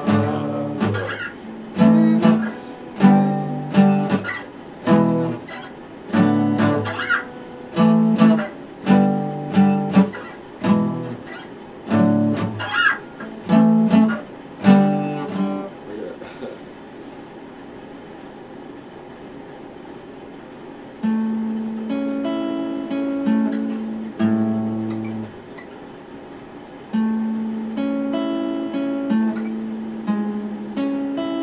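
Epiphone steel-string acoustic guitar strummed in sharp chords, roughly one a second, for the first half. After a quieter stretch, slower, sustained ringing notes follow in the second half.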